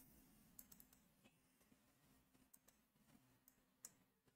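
Near silence, with a few faint computer mouse clicks: one about half a second in and one just before the end.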